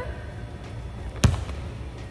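A volleyball struck once off the forearms in a firm forearm pass (bump), a single sharp smack a little over a second in.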